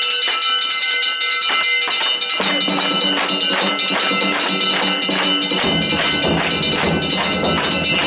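Danjiri float's hayashi: metal hand gongs (kane) struck over and over in a fast, steady rhythm, about three strikes a second, each ringing on, with deeper drum-like beats filling in during the second half.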